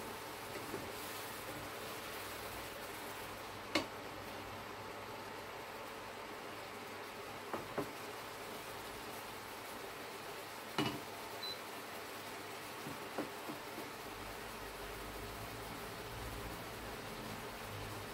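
Portable induction hob running at high power with a steady rushing hum, under a steaming pan of seafood, with a few faint knocks on the pan. A low hum joins in near the end.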